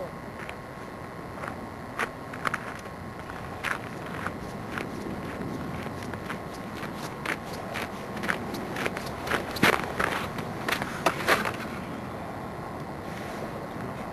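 Footsteps crunching on snow-covered ice, scattered at first, then closer and louder about ten seconds in before stopping.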